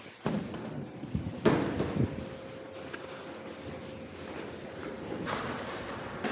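A few thumps and knocks, the loudest about a second and a half in, with a faint steady tone after it.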